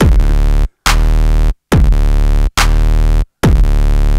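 Riddim dubstep bass from a Serum wavetable synth patch playing one repeated stab, roughly one note every 0.85 s with a sharp cut to silence between notes. Each note opens with a quick downward pitch sweep and then holds a steady, buzzy bass tone.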